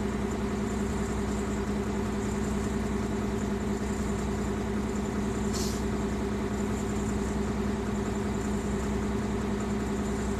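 New Flyer D40LF transit bus's Cummins ISC engine idling, heard from inside the passenger cabin as a steady hum with a low drone. A brief faint hiss about halfway through.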